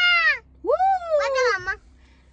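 A young girl's high-pitched excited squeals: a falling cry at the start, then a longer one that rises and falls, ending shortly before the end.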